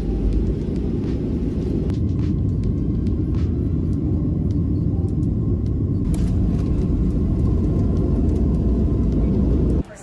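Jet airliner cabin noise heard from a window seat: a loud, steady low rumble from the engines and from the plane rolling on the runway.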